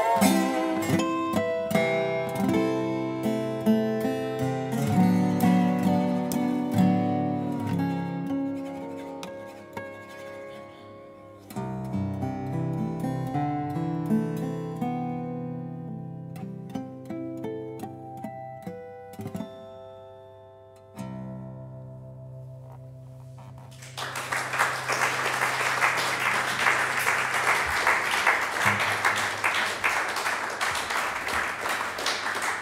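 Acoustic Weissenborn hollow-neck lap steel guitar, built by luthier Michael Gotz, played with a slide bar: a slow melody with gliding notes that thins out to its last ringing notes. Audience applause breaks out about three-quarters of the way through.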